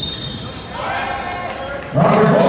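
Live basketball game sound in a large, almost empty arena: players calling out to each other over the knock of the ball and footwork on the hardwood court.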